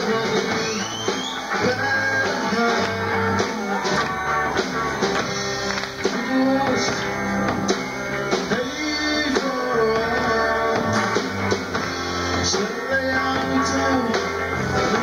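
Rock band playing live: guitar lines over a bass line that changes note about once a second, with a drum kit keeping time.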